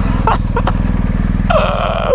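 BMW R 1250 GS boxer-twin engine idling steadily while the bike stands still. A hissing noise comes in near the end.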